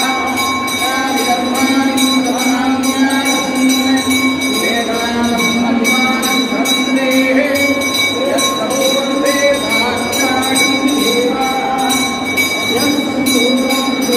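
Several voices chanting together over a steady, sustained drone of fixed tones.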